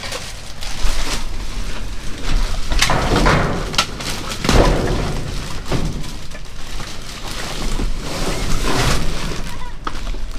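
Black plastic trash bag rustling and crinkling as gloved hands grab it and pull it open, with several sharper crackles and shifting thumps of the rubbish inside.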